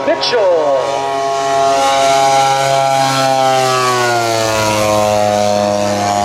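Twin piston engines of a large radio-controlled B-25 Mitchell scale model running steadily on a low fly-past. Their pitch falls from about three to five seconds in as the model passes.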